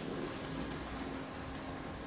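Room tone in a pause between sentences: a steady, even hiss with a faint low hum.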